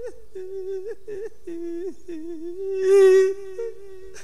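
A monk's voice holding one long, wavering sung note, drawn out at the end of a phrase in the melodic Isan lae sermon style, swelling louder about three seconds in.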